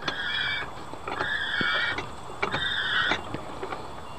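Output shaft of a Ford 4R70W automatic transmission, in neutral, being turned by hand, with three short squeaks about a second apart. It turns a little stiff in one direction, which probably means the clutch plates are in nice condition.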